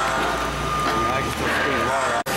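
Vincent CP-4 screw press running steadily, a low hum with a thin steady whine over it, while people talk over the machine.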